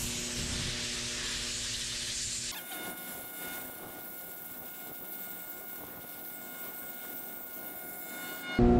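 Compressed-air blow gun blasting air at a hydraulic motor shaft to clear thread locker from under the washer: a loud hiss for about two and a half seconds, then a quieter hiss with a faint thin whistle.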